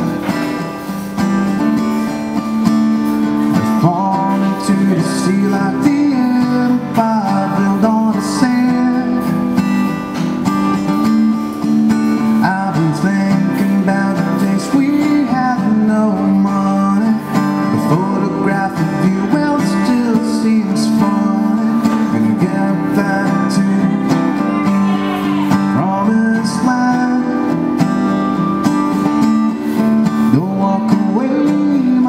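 Live solo performance: a strummed acoustic guitar with a male voice singing into a microphone.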